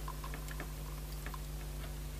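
Faint small ticks and scrapes of a jumper wire being worked into a plastic solderless breadboard by hand, over a low steady electrical hum.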